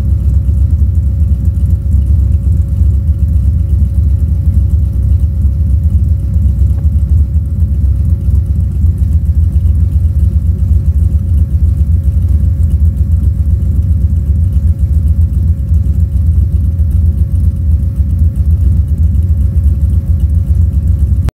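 Car engine idling steadily through open exhaust pipes, heard right at the tailpipes: a loud, deep, even rumble that does not rev.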